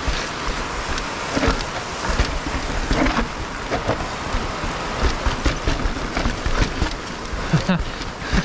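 Full-suspension mountain bike clattering down a rocky stone-stepped trail: irregular knocks and rattles of tyres, chain and suspension over the rocks, over a steady rush of wind noise on the camera microphone.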